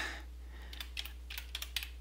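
Computer keyboard being typed: a handful of light, separate keystrokes, more of them in the second half, over a faint steady low hum.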